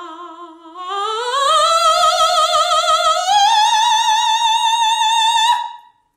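A soprano voice singing one wordless note with vibrato that climbs in two steps, from a low pitch to a very high note. The high note is held for about two seconds, then stops shortly before the end.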